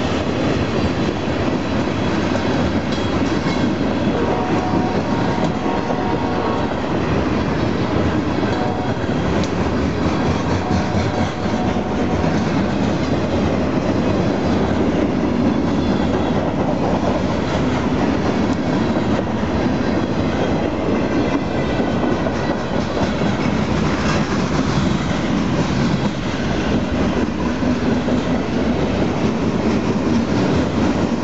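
Norfolk Southern freight train's cars rolling past at close range, a loud, steady run of steel wheels on rail.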